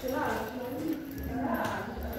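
Footsteps going down a stairway, under people's voices talking.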